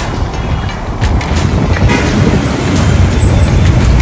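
Road and engine rumble of a car in motion, heard from inside the car.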